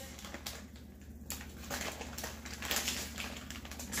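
Plastic bag of pork rind panko crinkling as a spoon scoops out the crumbs: a quiet, irregular run of small crackles and clicks.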